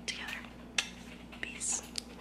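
A woman's faint whispering and breathy mouth sounds close to the microphone, with a short sharp click a little under a second in, over a steady low hum.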